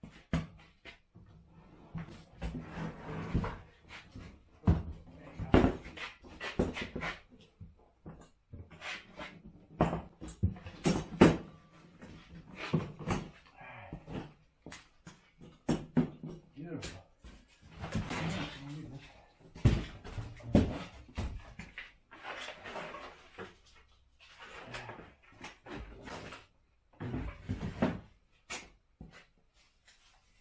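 Irregular knocks, thuds and clatters of a plastic garden dump-cart bin and its steel frame being flipped over and handled on a concrete floor, with a voice now and then.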